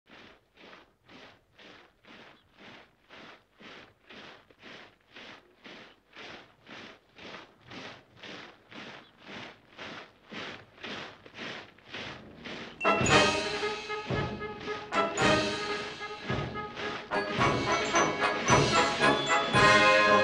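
A column of soldiers' boots marching in step, about two footfalls a second, getting steadily louder as it approaches. About thirteen seconds in, loud martial music with brass and drums comes in over the marching.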